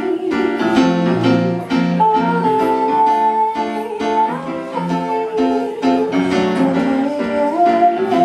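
Schimmel grand piano played in steady repeated chords, with a woman's voice holding one long sung note over them from about two seconds in to the middle.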